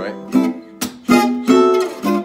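Acoustic gypsy jazz guitar with an oval soundhole, played with a pick: a short phrase of about five sharp picked attacks, each note ringing on briefly.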